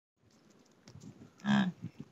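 A young yak gives one short call about a second and a half in, amid faint soft wet sounds of it licking a man's face.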